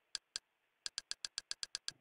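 Quick, evenly spaced clicks as a media-center menu list is scrolled up one entry at a time: two single clicks, then a fast run of about eight a second from about a second in.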